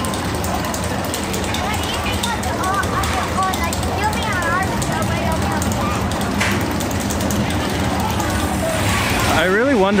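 Maurer spinning roller coaster running on its steel track, a steady mechanical running sound with voices mixed in.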